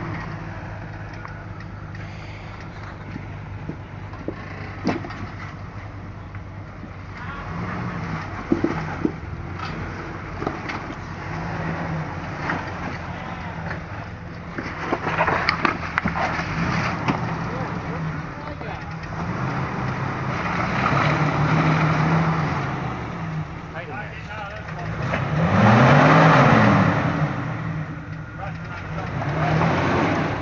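Jeep engine at low crawling revs, revving up and falling back in several throttle blips as it climbs over rocks, the longest and loudest rev about 26 seconds in. Scattered sharp knocks and scrapes of tyres and underside on rock.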